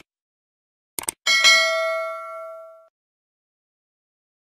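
Subscribe-button sound effect: two quick clicks about a second in, then a single bell ding that rings on and fades away over about a second and a half.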